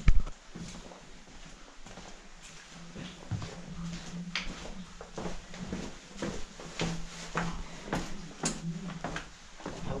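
A loud thump just at the start, then footsteps going down a narrow carpeted staircase: a string of uneven knocks, roughly one to two a second.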